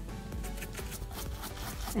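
A bristle paintbrush dabbing and rubbing red acrylic paint onto an EVA foam hammer head and its masking tape: quick, repeated soft scratchy taps, with background music fading underneath.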